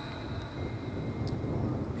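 Low, steady background rumble in a pause between speech, with a faint high steady whine and one small click a little past halfway.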